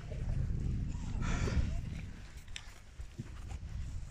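Wind buffeting the microphone in a low, irregular rumble, strongest in the first two seconds and then easing, with a brief breathy hiss about a second in.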